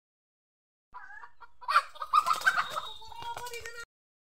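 Chickens clucking, with a person's voice among them, starting about a second in and stopping just before the end.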